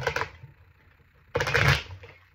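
A tarot deck being riffle-shuffled by hand. A short rustle comes at the start, then about a second and a half in a rapid run of card flicks lasts about half a second.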